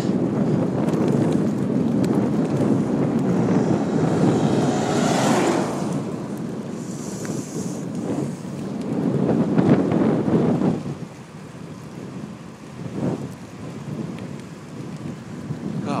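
Wind buffeting the microphone of a camera carried on a bicycle moving at speed: a loud, rough rush that swells and eases and drops noticeably about eleven seconds in.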